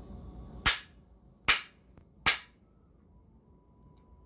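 A bamboo clapper struck three times, giving three sharp, evenly spaced cracks a little under a second apart.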